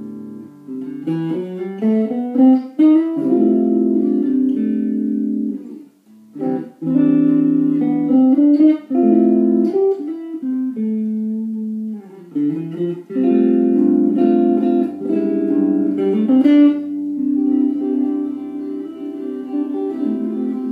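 Single-cutaway electric guitar played through a small practice amp: chords and quick rising runs of notes, with brief breaks about six and twelve seconds in.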